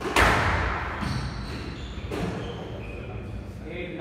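Squash ball struck hard and cracking off the court wall just after the start, the bang echoing around the court, followed by two weaker ball knocks about a second apart; spectators' voices after.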